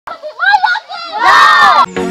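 A group of children shouting and cheering together. Short excited shouts come first, then a long, loud shout from many voices at once that cuts off suddenly near the end.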